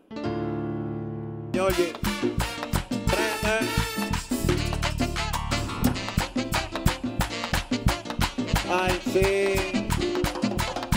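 Live Dominican tropical band music starting a song: a held chord for about a second and a half, then the full band comes in with a steady beat of güira and congas.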